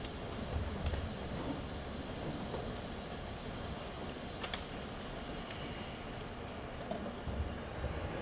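Room tone of a quiet performance hall: a low steady rumble with a few soft thumps and a single faint click about four and a half seconds in.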